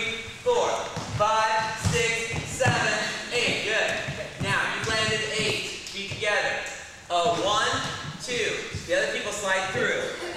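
A dance teacher's voice calling the beat aloud in short, evenly spaced, half-sung syllables as the class dances a combination, with soft thuds of feet on the studio floor underneath.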